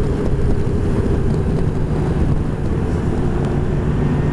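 Honda Gold Wing flat-six motorcycle cruising at a steady highway speed: an even engine hum under wind and road noise, with no change in pace.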